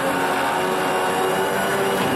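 Winch running steadily under load, pulling a car up onto a flatbed trailer, with a steady whine that sags slightly in pitch.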